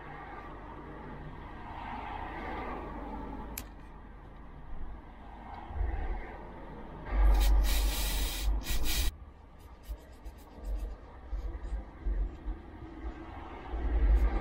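Aerosol spray can sprayed onto a corroded speedometer circuit board in one hiss of about two seconds around the middle, followed by short scratchy strokes of a toothbrush scrubbing the board.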